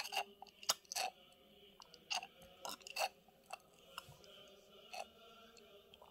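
Faint, irregular small clicks and taps, about a dozen, from plastic pieces of a perfume-making kit being handled: a plastic tube or pipette and the plastic stand.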